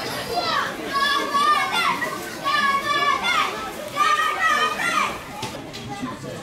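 High-pitched voices shouting and cheering in long drawn-out calls, about four in a row, each falling in pitch at its end.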